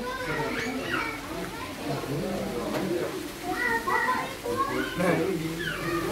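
Children's voices chattering and calling out, with several voices at once.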